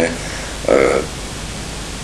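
A pause in speech filled by steady hiss and low hum from the recording, with one short spoken syllable from a man about two-thirds of a second in.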